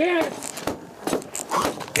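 A man speaking German in TV sports commentary, breaking off early for a short pause that holds only a few faint clicks, then starting to speak again at the very end.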